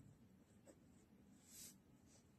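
Faint scratching of a ballpoint pen writing on paper, with one slightly louder stroke about a second and a half in.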